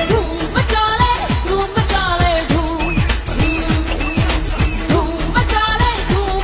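Bollywood pop film song: a voice singing over a fast electronic dance beat, with deep bass kicks that drop in pitch about twice a second.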